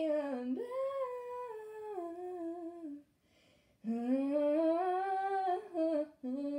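A woman's voice sings unaccompanied in long held notes without clear words. There are two phrases, with a short pause for breath about three seconds in.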